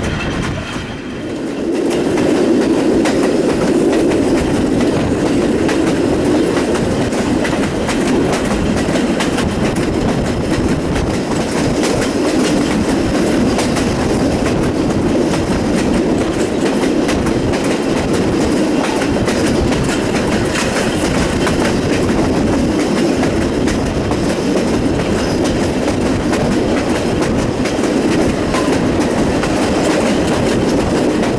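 Wooden-bodied passenger coach of a steam-hauled train running along the line, its wheels rolling on the rails with wind rushing past the open window. The running noise grows louder about two seconds in, then holds steady.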